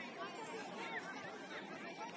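Indistinct chatter of several distant voices, players and sideline spectators at a soccer match, with no single voice standing out.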